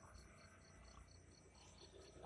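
Faint night-time cricket chirping in near silence: a steady, high, evenly pulsed chirp about six pulses a second.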